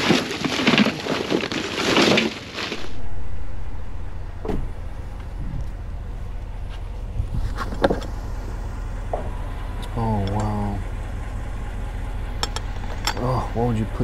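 Black plastic trash bags rustling and crinkling as they are handled, for about the first three seconds. Then a steady low hum with a few light clicks and knocks from a plastic storage drawer being pulled open.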